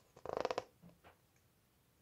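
A brief creak, a quick run of small ticks lasting under half a second, a little way in.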